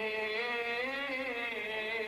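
A man's voice holding one long sung note that wavers gently in pitch, in the drawn-out vocal style of Lebanese zajal singing.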